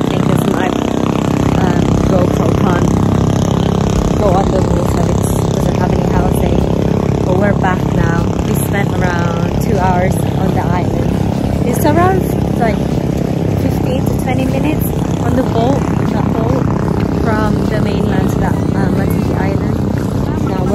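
A small boat's engine runs with a steady low drone while a woman talks over it.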